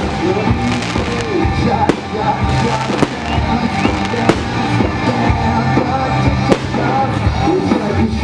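Aerial firework shells bursting in sharp bangs, several in a row a second or more apart, over loud music with a heavy bass and singing.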